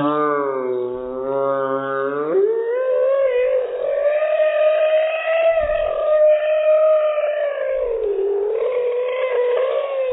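A young child's voice holding one long, wavering note for about eight seconds, after a lower-pitched drone in the first two seconds.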